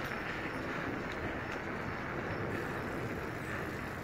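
Steady rushing noise of riding a fat-tire bicycle: wind buffeting the phone's microphone, with the tyres rolling on the paved path.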